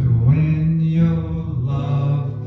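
Electric and acoustic guitars playing a slow soul tune, with a man's voice holding long notes that change pitch about once a second.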